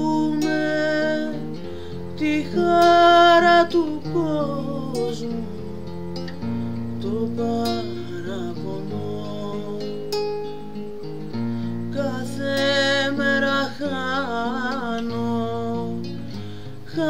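A woman singing with her own acoustic guitar accompaniment: plucked chords over bass notes that change every few seconds, while the sung line wavers with vibrato.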